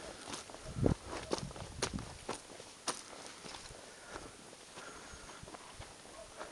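Footsteps on a loose, stony trail, with broken rock clicking and crunching underfoot. The steps are strongest over the first three seconds, then softer.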